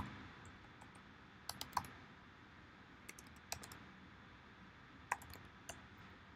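Faint, sparse keystrokes on a computer keyboard while code is being typed: a quick run of three presses about one and a half seconds in, then single presses spaced seconds apart.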